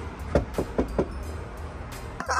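Knuckles knocking on a door, four quick raps.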